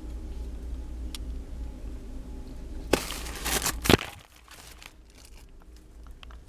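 Crinkling of the plastic wrap on toilet-paper multipacks, a rustle of about a second starting about three seconds in with two sharp clicks. It plays over a low steady hum that stops near the end of the rustle.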